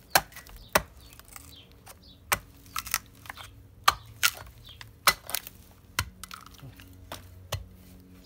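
A small hatchet chopping into rotten wood inside the hollow of a cherimoya tree trunk: about a dozen sharp, irregularly spaced strikes, clearing out decayed wood.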